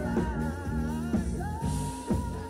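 Live pop-rock band: a woman singing into a microphone over electric guitar, bass and drums with a steady beat, holding one long note from about one and a half seconds in.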